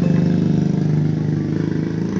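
A motorcycle engine idling steadily.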